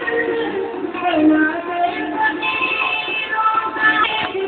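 A singer's voice carries a devotional Urdu song's melody over musical accompaniment, with long held notes that bend and glide in ornamented turns.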